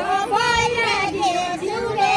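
Voices singing a Deuda, the Far-Western Nepali folk song of the circle dance, unaccompanied; a high, wavering melodic line carries through.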